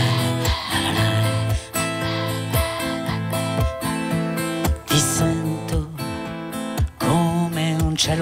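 Acoustic guitar strummed in chords, an instrumental passage between sung lines of a song.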